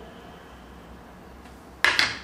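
A faint low hum, then near the end a single sharp clack as a white plastic multicooker spoon is set down on a wooden cutting board.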